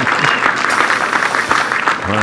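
Golf gallery applauding a holed birdie putt: a steady clatter of many hands clapping at once.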